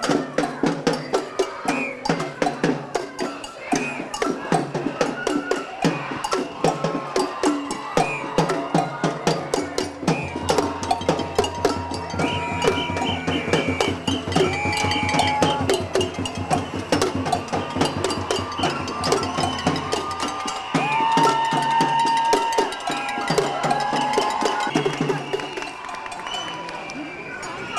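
Hand-held drums beaten with sticks in a fast, steady street-percussion rhythm, with short whistle blasts and crowd voices over it.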